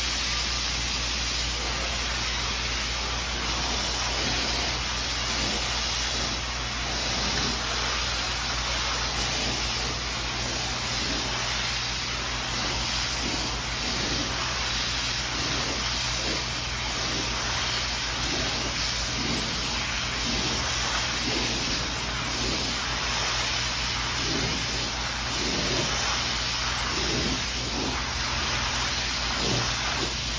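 Water spraying steadily from a garden hose nozzle onto a wool rug and the wet floor around it, a continuous hissing rush like heavy rain.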